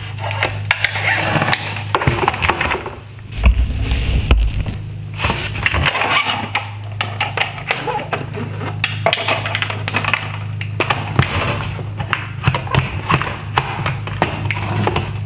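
A Torx screwdriver working a screw deep inside a plastic Tesla Model 3 headlight housing: irregular clicks, scrapes and rattles of the tool and the housing being handled, with a low thump about three and a half seconds in. A steady low hum runs underneath.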